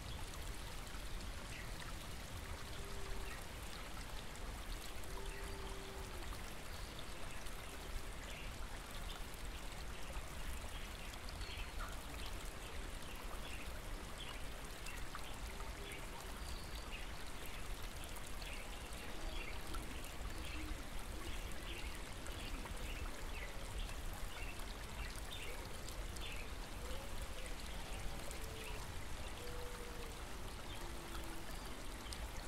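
A small stream running steadily, with faint, scattered bird calls over it.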